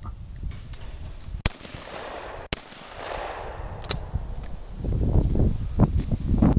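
Two shotgun shots about a second apart, fired at a doubles pair of skeet targets.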